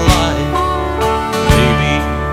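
Country song's instrumental passage between vocal lines: a guitar lead with bending, sliding notes over a steady bass, with drum hits about a second and a half apart.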